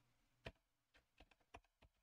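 Faint computer keyboard typing: a single keystroke about half a second in, then a quick run of keystrokes in the second half.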